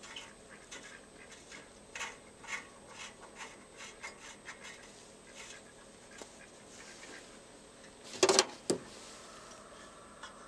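Faint rubbing and small clicks of hand work threading a sensor back into the exhaust manifold of a Suzuki Samurai engine, with two louder sharp knocks near the end.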